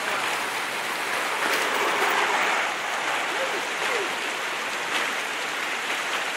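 Running water of a small stream rushing steadily through a shallow, churning stretch of white water.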